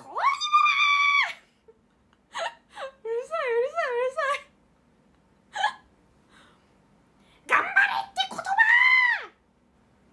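A young woman's high-pitched wordless cries: a held squeal in the first second, a wavering, warbling cry around the middle, and a squeal that rises and falls away near the end.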